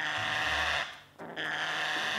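Parrot giving two harsh, raspy screeches, each just under a second, with a short break between them, as it protests at being held in a towel while its feet are examined.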